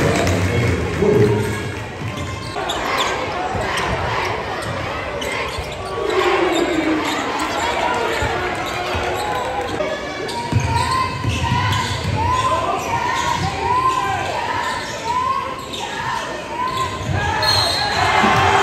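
A basketball being dribbled on a hardwood gym floor, echoing in the hall, over crowd voices; the bounces are clearest in the second half.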